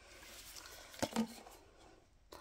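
Faint handling noise of plastic drink bottles being picked up and moved, with a light knock about a second in.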